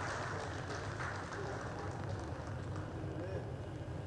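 Room ambience with a low murmur of distant voices and a steady low hum. A run of faint quick clicks sounds in the first half.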